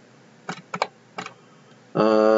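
A handful of short, sharp computer mouse clicks, some in quick pairs, spread over about a second.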